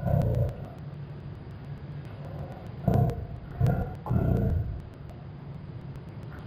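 A muffled, indistinct voice talking in a room, in short bursts with pauses, about a second in and again from about three to four and a half seconds in.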